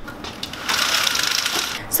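Handling noise as the camera is picked up and moved: a rasping rustle of about a second, starting a little before the middle.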